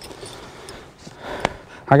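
Low, even outdoor background noise with a single sharp click about a second and a half in, then a man starts to speak at the very end.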